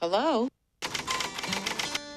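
Typewriter keys clattering in a fast run of sharp clicks that starts just under a second in, typing out an on-screen title card. It is preceded by a brief wavering voice-like sound and a short silence.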